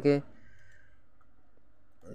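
The last syllable of a man's speech, then low steady background hiss with no distinct sound.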